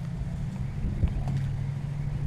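A steady low machine hum, even and unchanging.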